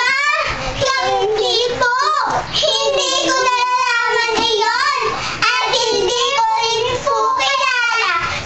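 Several young girls singing a children's song together in Tagalog, loud and close.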